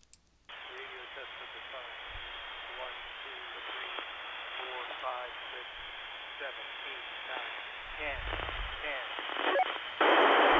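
Icom IC-R30 scanner receiving an FRS handheld's voice test call at about 462 MHz: a faint, weak voice under a steady, thin radio hiss that comes on about half a second in. The signal is heard all right but a little weaker than on the older IC-R20.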